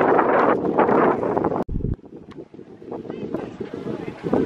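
Loud wind buffeting the microphone, with indistinct voices, that cuts off abruptly a little under two seconds in; after that, quieter wind noise with faint distant voices.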